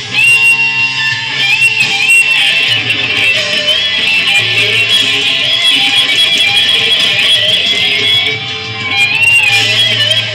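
Electric guitar lead line played with string bends, the notes gliding up into held high notes, over low sustained tones.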